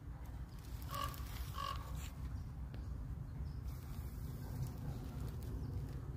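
Two short animal calls, about two thirds of a second apart, over a steady low outdoor rumble.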